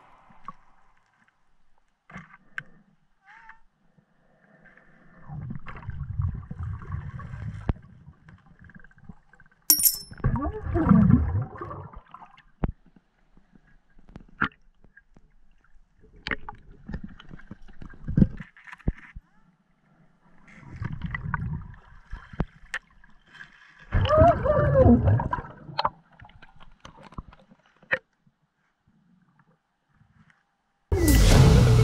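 Muffled underwater gurgling of bubbles in several separate bursts of a second or more each, a few seconds apart, with a few sharp clicks and knocks in between.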